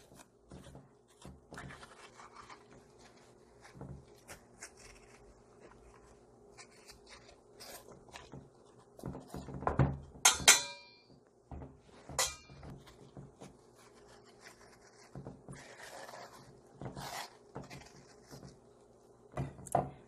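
Metal spoon scraping the seeds out of a halved overripe cucumber, with soft, irregular wet scrapes and knocks. A little past ten seconds the spoon clinks against the stainless steel bowl with a brief ring, and again near twelve seconds.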